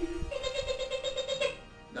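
A short lower note, then one long, high, wavering note held for about a second.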